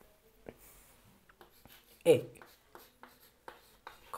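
Chalk writing on a blackboard: a run of short, faint taps and scratches from the strokes of the chalk.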